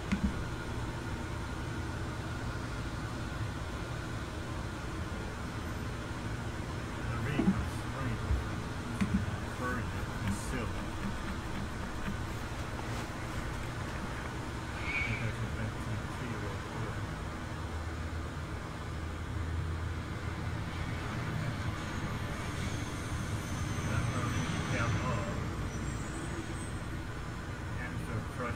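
Car engine idling steadily under a low hum, with faint voices in the background.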